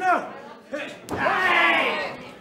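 People yelling in long, drawn-out shouts, the loudest in the second half, with a single sharp smack about a second in.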